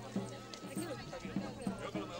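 Processional music: a drum beating about three times a second under a high melody of held notes, with crowd voices mixed in.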